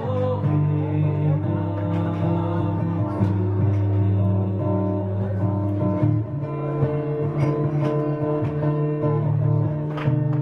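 Acoustic guitar strummed live, its chords ringing on, with a change of chord about six seconds in.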